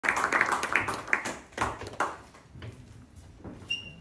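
Scattered audience applause, a quick irregular patter of hand claps that dies away about two seconds in. Near the end comes a brief high-pitched tone.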